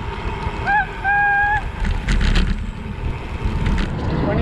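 Wind buffeting the microphone of a camera on a moving bicycle, a steady low rumble. About a second in there is a brief high two-part tone: a short blip, then a held note.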